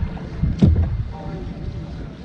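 Low wind rumble on the microphone of a camera worn in a plastic kayak, with handling noise and one sharp knock a little over half a second in.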